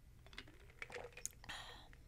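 Faint sipping and swallowing from a plastic protein shaker bottle, with scattered small clicks, then a short breathy sound about three-quarters of the way through.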